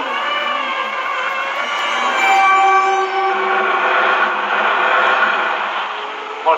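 Horror film soundtrack: eerie music of several sustained tones layered together, some gliding slowly in pitch.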